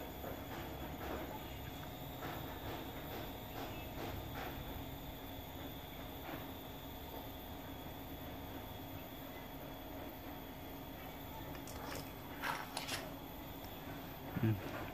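Faint handling of small metal parts: soft clicks as a nut is turned by hand onto a steel rod over a steady low room hum, then two louder metallic clicks near the end.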